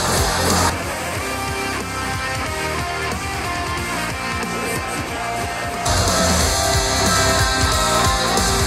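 Hard-rock track with electric guitars, played at maximum volume through a Tribit Stormbox Blast portable Bluetooth speaker. Under a second in it switches to the Soundcore Motion X600, which is quieter, with less bass and the high end rolled off, leaving mostly mids. Near the end it switches back to the louder, fuller Stormbox Blast.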